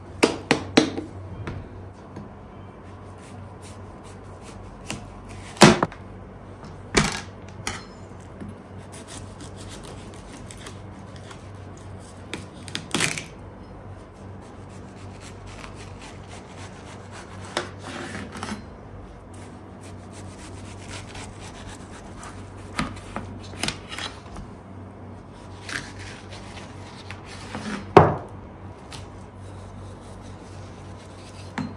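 A kitchen knife slicing the rind off a whole watermelon: scraping, rubbing cuts broken by a few sharp knocks as the melon or blade meets a metal tray, the loudest near the end.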